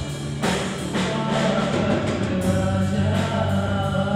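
A live rock band playing a song: electric bass, acoustic guitar, keyboard and drum kit with a steady beat, and a male voice singing over them.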